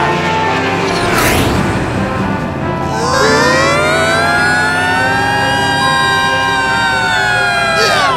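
Animated-cartoon soundtrack: background music, with a brief whoosh about a second in. From about three seconds in, a long high-pitched sound rises and then holds until just before the end.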